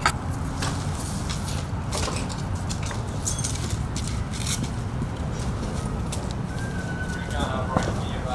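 Footsteps and debris clattering on wood and sheet-metal rubble: scattered short clicks and knocks over a steady low rumble, with faint voices in the background.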